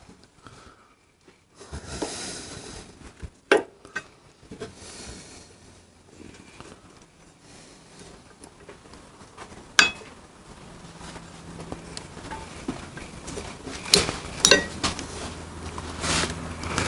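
Small metallic clicks and taps of a brake pad being worked and hooked into a motorcycle's rear brake caliper, with quiet handling noise between. A few sharp clicks stand out: one about three and a half seconds in, one near ten seconds, and two close together near the end.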